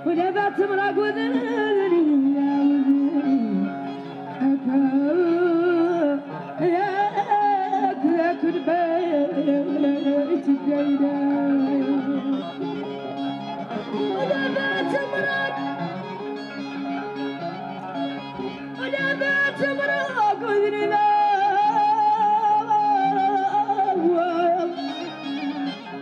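Hassani folk music from a seated ensemble: a woman's voice sings a winding, ornamented melody over plucked strings, with a steady low note held underneath throughout.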